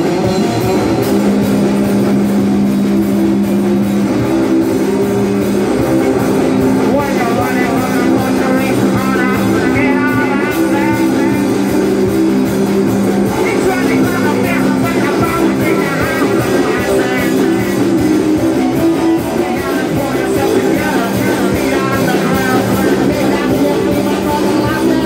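A live rock band playing: electric guitar, bass guitar and drum kit, with a singer's voice over the band in the middle stretch.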